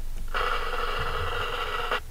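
Slideshow animation sound effect: a steady ringing sound made of several tones at once, starting about a third of a second in and cutting off abruptly after about a second and a half.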